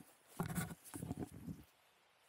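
A BASE jumper's feet touching down on grass and running out the landing under canopy: about four quick footfalls in close succession, starting about half a second in.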